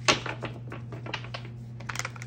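A deck of tarot cards being shuffled by hand: a quick, irregular run of light clicks and flicks as the cards slide and tap against the deck, loudest just after the start. A steady low hum sits underneath.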